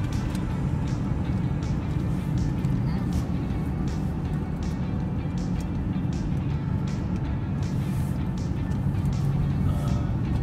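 Steady road and engine rumble heard from inside a moving car, with music playing along with it.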